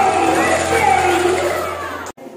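A group of children and adults singing together, voices gliding in long drawn-out notes over a steady low hum, fading out near the end.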